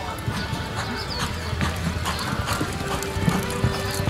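A horse's hoofbeats on soft arena dirt as it lopes, a run of short strikes, heard over background music and voices.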